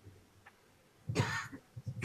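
Near silence, then a person coughs once, briefly, a little over a second in, followed by a few faint low knocks.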